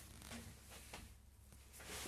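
Faint rustling of clothing and camera handling in a small elevator cab, nearly silent otherwise.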